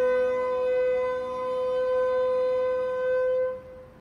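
Alto saxophone holding one long, steady note that stops about three and a half seconds in.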